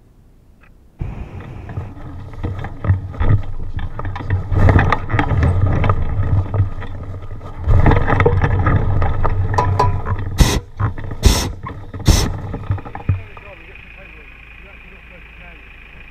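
Hot air balloon basket touching down and dragging across a mown field: a sudden loud, uneven scraping rumble that starts about a second in and stops about thirteen seconds in, with three short sharp bursts just before it ends.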